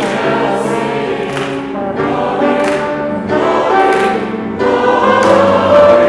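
A congregation singing a hymn together, accompanied by piano and trombone.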